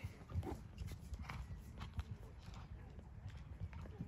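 A horse close by, with irregular hoof knocks and thuds about a second apart over a low, steady rumble.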